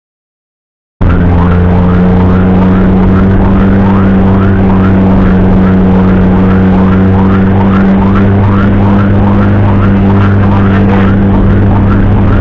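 Ambulance electronic siren on a fast yelp, about three rising sweeps a second, over a steady low drone of the ambulance in the cab. It cuts in abruptly about a second in and stays very loud and even.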